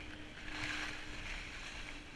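Skis sliding over packed snow in a steady hiss that swells into a louder scrape about half a second in, as the skis turn, with wind on the camera microphone.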